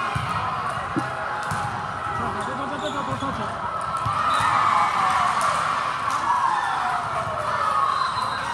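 Volleyball rally in a large hall: sharp ball hits about a second in and several more after, over the steady chatter and shouts of players and spectators. The voices swell around the middle, with a long falling call near the end as the point is won.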